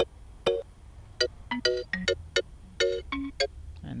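Sampled kalimba notes from a mallet sample pack, played as a quick melody of short plucked tones that each die away fast, with a brief pause after the first two notes.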